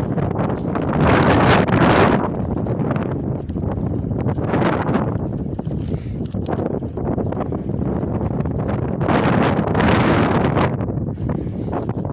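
Wind buffeting the microphone in swells, over the swish and crunch of footsteps wading through long dry grass.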